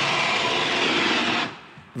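Ski-jump skis running down the in-run's ceramic ski tracks: a steady rushing hiss that fades out about one and a half seconds in.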